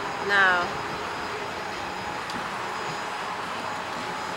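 Steady, even rushing noise of air over the onboard microphone of a Slingshot ride capsule as it swings and turns.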